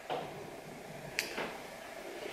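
Quiet room tone with the faint rub of a lipstick bullet being drawn across the skin of a forearm, and a single sharp click about a second in.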